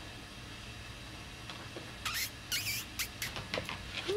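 Schnauzer puppy moving about: from about halfway through, two short high squeaks, then a quick run of light clicks.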